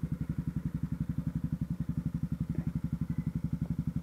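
Honda CB Twister motorcycle's single-cylinder engine running at a steady low speed, a rapid, even putter of about thirteen pulses a second, with a couple of faint small clicks.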